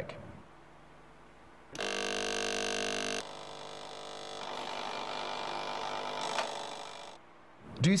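Ticker timer buzzing. A loud, steady buzz starts about two seconds in and drops after about a second and a half to a quieter, rougher buzz. That lasts about four seconds, then stops.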